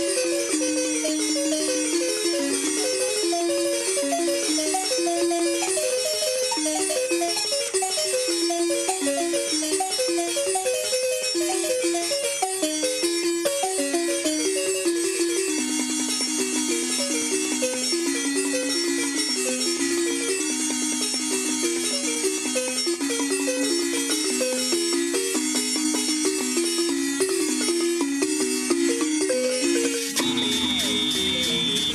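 Chopi timbila orchestra of wooden-keyed xylophones with gourd resonators, many players striking a fast, cyclic interlocking pattern of notes. About halfway through, the lowest repeated notes step down to a deeper pitch.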